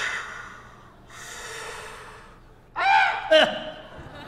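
Two breathy, rushing exhalations, then a short high cry with a pitch that bends up and down about three seconds in.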